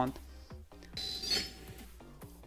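Faint electronic beeping from an Edison educational robot while a program uploads to it over its cable, lasting about a second from a second in, after a small click about half a second in.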